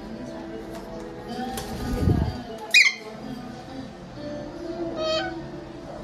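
Background music with steady held notes, broken a little under three seconds in by one short, loud squawk from an Alexandrine parakeet, with a fainter call a little after five seconds. A dull low bump comes just before the squawk.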